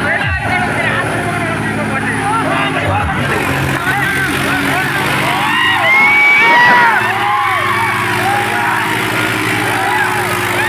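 Tractor diesel engine running steadily under a crowd shouting and whistling, loudest about six seconds in. Music with a thumping bass beat is heard at the start and fades out after about three seconds.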